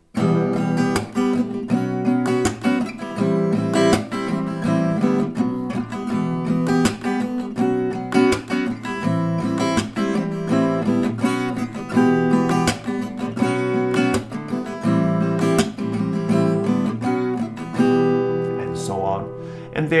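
Acoustic guitar strummed through the song's chord progression, E minor, B sus and A minor, then B sus again, in a steady down, down, up, clap, up, down, up pattern with a percussive clap on the strings. Someone says a word right at the end.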